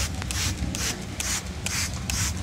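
Hand trigger spray bottle misting water over potting soil in a pot, in quick short sprays about two a second, over a steady low hum.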